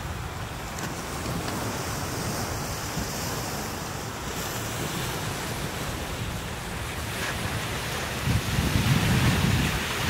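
Ocean surf washing onto the beach with wind buffeting the microphone. The low rumble grows louder near the end.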